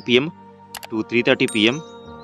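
Speech over steady background music, with one sharp click about three-quarters of a second in: the click of the animated subscribe-button overlay being pressed.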